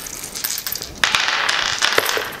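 A small clear plastic bag of game tokens crinkling and rustling as it is handled, louder from about a second in.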